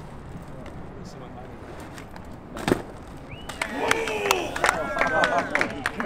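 BMX bike tyres rolling on concrete, then one sharp impact of the bike hitting the ground a little under three seconds in. Onlookers then shout and whoop, with scattered sharp clicks.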